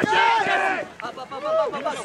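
Several voices shouting and calling out at once, overlapping yells from players and teammates on the sideline of an ultimate frisbee field.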